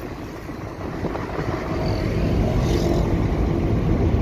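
A moving car heard from inside its cabin: a steady engine and road noise that grows slightly louder.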